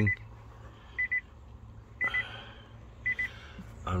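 Nissan Leaf door chime sounding: short bursts of two or three quick, high beeps, repeating about once a second. It is the car's open-door warning.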